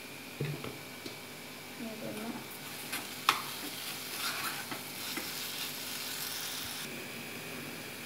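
A metal spoon stirs chopped banana and sugar in a nonstick saucepan on the stove, scraping and clinking against the pan, with one sharp clink about three seconds in. A light sizzle rises in the middle as the sugar heats and melts into the banana.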